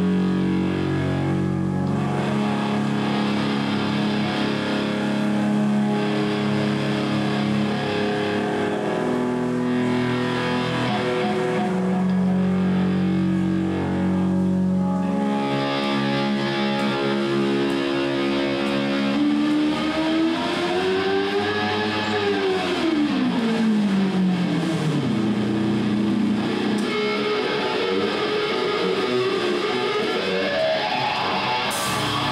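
Distorted electric guitar played live through an amplifier, holding long sustained notes that change every couple of seconds. About two-thirds through, a note swoops up and down in pitch, then climbs again near the end.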